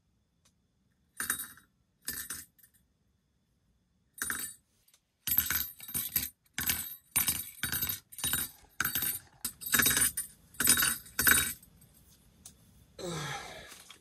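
An ice-fishing rattle reel clattering in short bursts as a fish takes line off the spool: a bite. Two bursts come about a second in, then after a pause a quick run of about a dozen, roughly two a second, that stops near the end.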